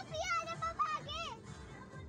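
A child's high-pitched voice calling out for just over a second, over background music with a steady beat.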